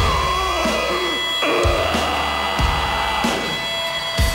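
Live rock band playing loud, distorted electric guitar over bass and drums, with heavy low notes changing about once a second.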